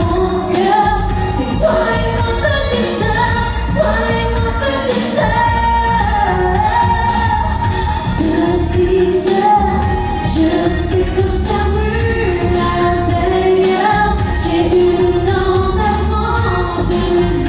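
A female singer sings a pop song over a full musical accompaniment at a soundcheck, with the melody going on without a break.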